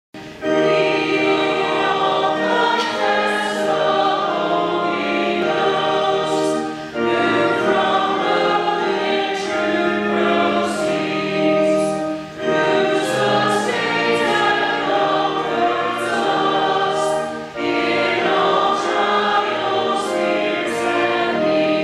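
A choir singing in sustained phrases, with short breaks between phrases about every five seconds.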